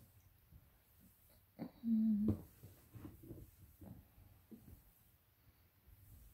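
Ground sausage meat being scooped by hand into a cloth dish towel: faint soft squishing and small knocks. About two seconds in, a brief steady-pitched voice-like sound is the loudest thing heard.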